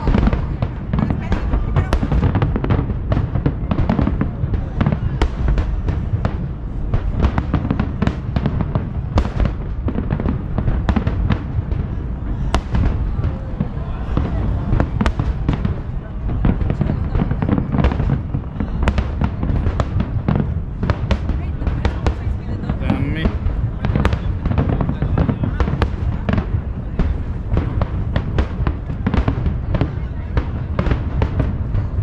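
Aerial fireworks shells bursting in a dense, continuous barrage: many sharp bangs a second, overlapping with no pauses, over a steady deep rumble.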